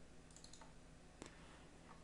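Near silence with a few faint, sharp computer mouse clicks as a tool is picked from a list.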